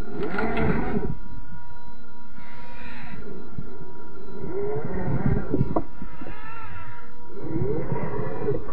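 Slowed-down sound of an RC rock crawler's brushed 540 electric motor and geared drivetrain working over rocks, stretched into drawn-out low tones that slide up and down in pitch. A sharper knock comes near the middle, likely the chassis or a tyre against rock.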